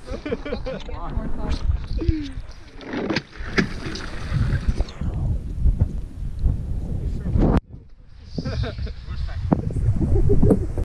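Sheet ice on a frozen lake being broken: many short sharp cracks and clinks of ice plates and shards on the frozen surface, over wind buffeting the microphone. The level drops abruptly about three-quarters of the way through.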